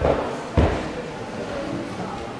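Two dull thuds of a child gymnast's body landing on a carpeted floor-exercise mat during a handstand and roll, the second one louder, about half a second in.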